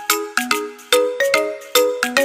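Background music: a bright, chiming tune of short struck notes, a new note about every half second.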